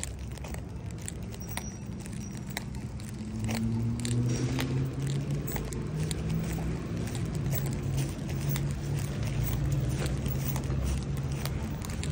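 A road vehicle's engine hums low and steady, rising in pitch over the first few seconds, then holding and getting a little louder. Light clicks and rattles sound throughout.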